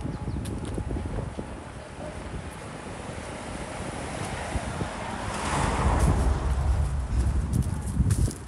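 Footsteps shuffling through dry fallen leaves on a pavement, with wind rumbling on the microphone. The leaf rustle grows louder and crackly in the second half.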